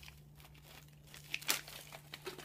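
Plastic-foil snack pouch crinkling as it is handled and set down, a few short crinkles about a second and a half in.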